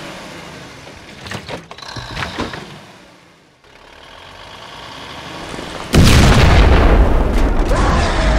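A sudden, loud boom sound effect about six seconds in, marking the log crashing onto the toy truck, preceded by a sound that builds up for a couple of seconds. There are a few sharp knocks in the first half.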